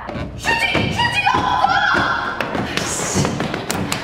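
Audio of a TV drama scene: several thuds and taps with a voice and music under them, and a brief hiss near the end.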